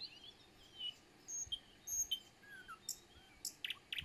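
Small birds calling in short, scattered chirps and brief downward-slurred whistles over a faint outdoor hiss, with a few quick ticks near the end.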